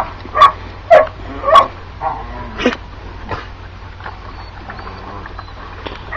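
Greyhounds barking and yipping: about five short, sharp barks in the first three seconds, then quieter.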